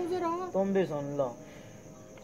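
Crickets chirping steadily with a high, continuous trill. For about the first second a louder wavering, tuneful voice-like sound lies over them, then stops, leaving the crickets.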